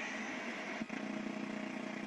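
JC Penney 5053 VHS VCR's tape mechanism motor running with a steady low hum, with a small click a little under a second in. The tape reels are not turning, which the owner puts down to worn belts or idlers.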